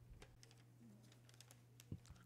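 Near silence: room tone with a low steady hum and faint scattered clicks, like keys or buttons being pressed.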